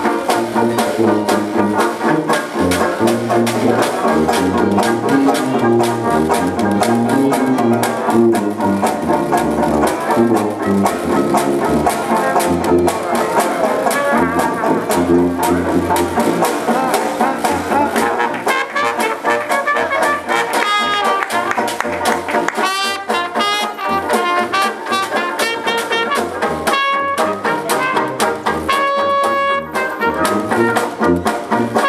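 Small acoustic street jazz band playing a stomp tune: sousaphone bass line under trumpet and trombone, with strummed banjos and clarinet. Held, wavering lead notes come forward in the last third.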